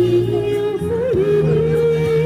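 A woman singing into a handheld microphone over a backing track. She holds one note, then dips and settles on a slightly higher long note about a second in.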